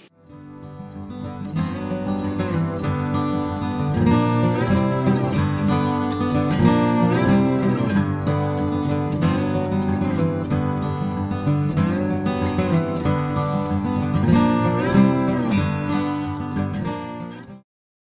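Background music, led by guitar, with a steady rhythm. It fades in over the first couple of seconds and cuts off suddenly just before the end.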